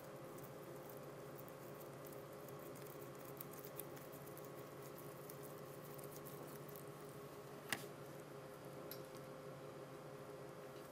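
Faint steady room hum with light handling noise from a metal coring tube being twisted through cooked pork tenderloin with gloved hands: small scattered ticks, and one sharper click late on.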